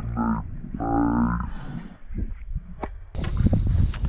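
Two drawn-out wordless shouts from a man, each under a second, as a redfish strikes the lure. About three seconds in, a low rumble of wind on the microphone starts.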